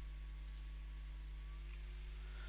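A computer mouse clicking faintly a couple of times within the first second, over a steady low electrical hum.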